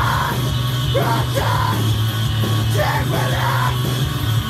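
Heavy post-hardcore band music with a man's shouted vocal over it, in repeated short phrases.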